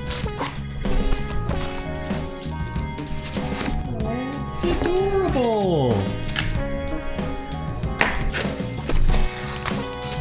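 Background music with a gliding melody line, over a few short knocks of cardboard and foam packaging being handled as a laser engraver is unpacked.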